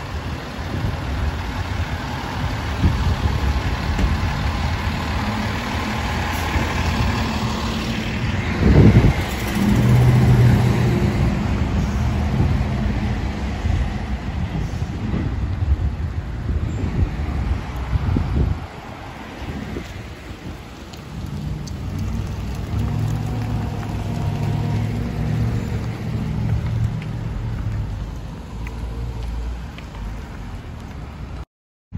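City street traffic: car and truck engines passing with a continuous low hum, a sudden loud burst about nine seconds in followed by a heavy engine drone, and the traffic easing somewhat in the second half.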